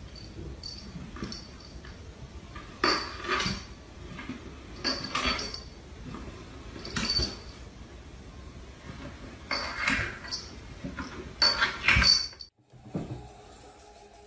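A cat sliding down wooden stairs on its back, its body bumping onto one step after another. The knocks come about every two seconds, with two close together near the end.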